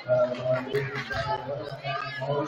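Indistinct overlapping voices and chatter from players and spectators in a school gymnasium during a stoppage in a basketball game.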